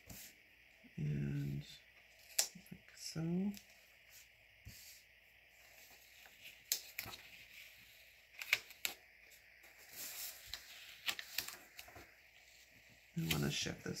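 Light handling of paper stickers: scattered soft clicks and crackles as a sticker box is pressed and smoothed onto a paper planner page with a fingertip and fingernail. Two short hums from a voice about one and three seconds in, the second rising in pitch.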